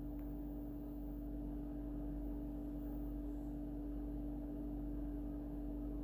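Steady low hum holding one constant pitch, with faint background hiss.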